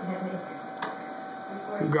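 A man's voice in short snatches over a steady hum, with a single sharp click a little under a second in.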